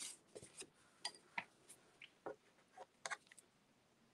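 Faint, scattered taps and rustles of cardstock being handled and set down on a craft table: about a dozen brief clicks, the strongest about a second and a half and three seconds in.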